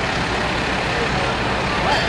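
A fire truck's diesel engine idling with a steady low rumble, under busy street noise and scattered voices.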